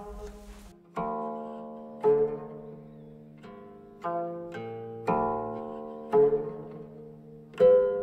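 Instrumental music: a plucked string instrument playing slow single notes, roughly one a second, each struck sharply and left to ring out.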